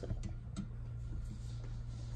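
Quiet room tone with a steady low hum, and a few faint light ticks near the start as a plastic TDS tester pen is set down into a plastic cup of water.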